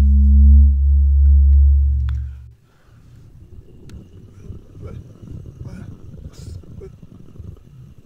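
A loud, steady, low droning hum that cuts off suddenly about two and a half seconds in. It is followed by faint rustling and light clicks, typical of plush toys being handled close to the microphone.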